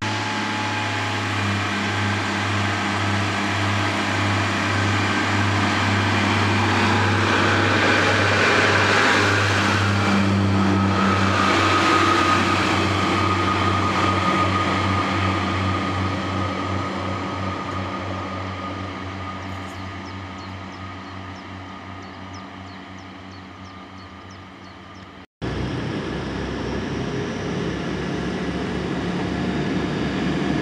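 Class 142 Pacer diesel railbus's underfloor engine running with a steady throbbing beat. It grows louder and revs as the unit pulls away, then fades as it recedes, with a run of light clicks from its wheels near the end. After a sudden cut about 25 seconds in, a Class 180 diesel unit's engine runs steadily at a platform.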